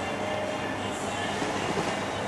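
Steady room noise with a low electrical hum.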